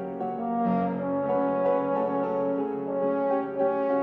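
Trombone playing a slow melody of held notes that change pitch every half-second or so, with grand piano accompaniment.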